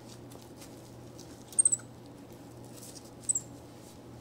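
White-faced capuchin monkey giving short, very high-pitched squeaks: a quick run of three about a second and a half in, and two more near the end.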